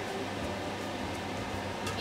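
Steady low hum and hiss of room noise, like a fan running, with one faint click near the end.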